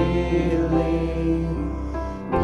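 Worship band music: several voices singing a slow song in harmony, holding long sustained notes over steady instrumental accompaniment with a held bass tone.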